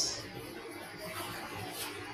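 A pause in a man's talk: faint, even room hiss, with the end of a spoken word fading out at the very start.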